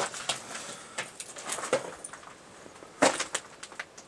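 Scuffing and scraping of shoes and clothing against concrete as a person squeezes through a narrow bunker passage: scattered small knocks and scrapes, with a louder scrape about three seconds in.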